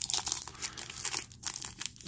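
Baseball cards being handled and shuffled from a pack: an irregular run of crinkling and rustling clicks as the cards slide over one another.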